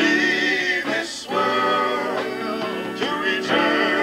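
A group of men singing together in harmony, with long held notes and brief breaks between phrases.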